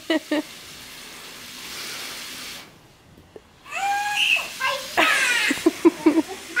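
A young girl laughing and then squealing in high, gliding shrieks as she is sprayed with a garden hose. The hiss of the hose's spray is heard between, building for about two seconds before cutting off suddenly.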